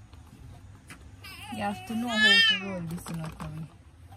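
A toddler's whining cry, one drawn-out wordless wail that rises and falls, loudest in the middle and lasting about two seconds.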